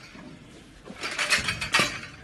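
A heavily loaded barbell lifted off squat stands, its metal plates and collars clanking and rattling for about a second, starting about a second in.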